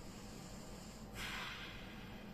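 One audible breath from a woman holding a deep lunge stretch, a soft rush of air lasting about half a second, a little past the middle.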